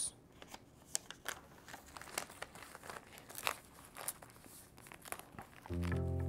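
Paper pages of an old notebook being handled and turned, a scatter of light crinkles and crackles. Background music comes in near the end.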